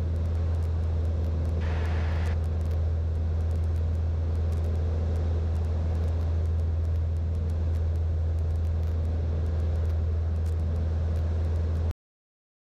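A light aircraft's piston engine and propeller droning steadily in cruise, heard inside the cockpit, deep and even throughout. A brief hiss comes in about two seconds in.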